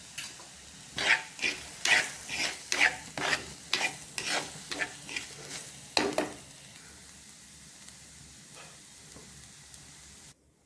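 A metal spoon stirring shredded cabbage stir-fry in a dark pan. About a dozen scraping strokes come at roughly two a second, then stop after about six seconds, leaving a faint steady sizzle.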